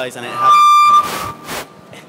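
A short, loud, high-pitched squeal of microphone feedback through the PA, swelling quickly, holding one steady pitch for about half a second, then cut off abruptly.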